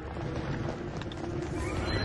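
Horses whinnying over clattering hoofbeats and a low rumble, with a rising whinny near the end.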